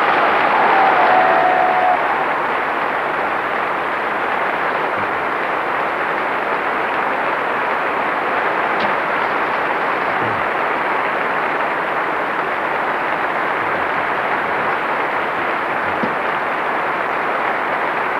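Steady rushing noise of a moving train, with a faint held tone in the first two seconds.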